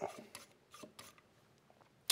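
A few faint clicks and light rubbing from a needle-tip oil bottle and hands working on the metal receiver of a Ruger 10/22 rifle as its rails are oiled, dying away after about a second.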